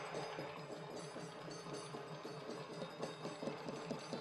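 Large crowd clapping, faint, with many uneven claps running together.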